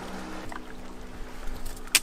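A few light crunches and clicks of feet on a dry dirt and stone riverbank, bunched near the end, over a steady low hum.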